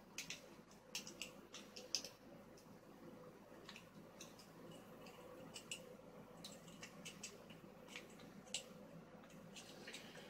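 Faint, irregular clicking and scraping of a lock pick working the wafers of a vintage Yale wafer padlock, the sharpest click about two seconds in, over a faint steady hum.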